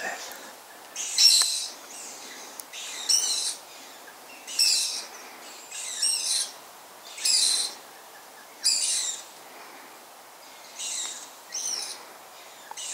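An owl calling over and over, a short harsh hissing screech about every one and a half seconds, some eight times, with a brief pause before the last two.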